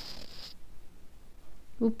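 A brief rasping hiss about half a second long as salt is poured from a spoon into the pot of spiced chickpeas.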